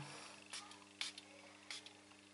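Three short hisses from a Michael Kors Wonderlust perfume spray bottle's atomizer, spaced about half a second apart, over a faint steady hum.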